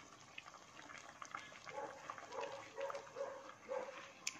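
A dog barking faintly several times, short barks spread through the second half, over a low background hush.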